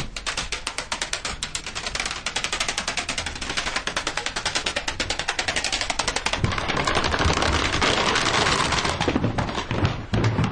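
Plastic CD and DVD cases toppling one after another in a domino chain: a fast, steady clatter of clicks. About six and a half seconds in it grows louder and denser, with heavier thuds as the cases tumble down the stairs.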